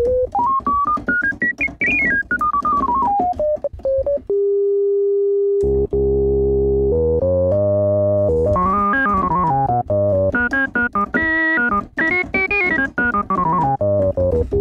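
Moog Sub 37 analog monosynth played with its filter resonance turned up so the filter self-oscillates as a second oscillator. First comes a pure whistling tone in a quick run of notes rising and falling, then a held note. From about six seconds in the tone turns much fuller and organ-like, played in rising and falling runs of notes.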